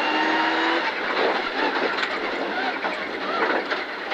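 Rally car engine holding a steady high-rev note, then going off the throttle just under a second in as the car slows hard from about 110 to under 80 km/h. After that there is mainly tyre and road noise on the snowy gravel.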